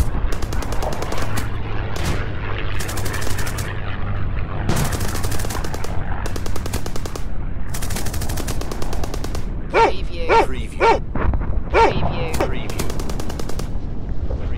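Repeated bursts of automatic gunfire, each lasting a second or two, over a constant low rumble of battle noise, with a few short shouts about ten seconds in.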